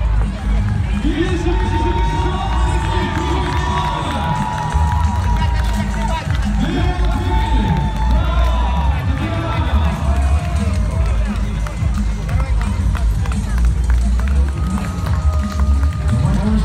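Loud music with a heavy bass beat over public-address loudspeakers, a man's voice announcing over it, and crowd noise from spectators as a runner comes in to the finish line.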